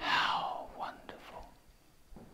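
A man's breathy, whispered exclamation, loud at first and falling in pitch over about half a second, then a few faint breaths.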